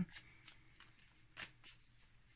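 A deck of tarot cards being shuffled by hand: faint card-on-card riffling with a few soft clicks.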